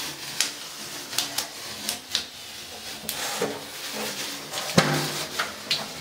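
Blue painter's tape being peeled off a tiled shower wall and bunched up in the hands: an irregular run of short crinkles and ticks.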